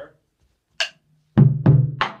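Taiko drum struck twice with wooden bachi, about a third of a second apart, each hit loud and deep with a ringing tail. A single sharp click comes a little over half a second before the first hit.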